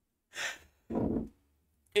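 A man sighs twice: first a short breathy exhale, then a voiced one.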